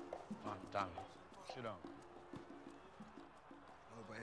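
A man's voice saying a few words in the first half, over faint background music with held notes.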